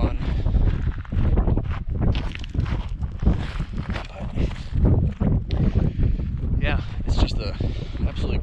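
Wind buffeting a body-worn action camera's microphone, with footsteps on a dirt track.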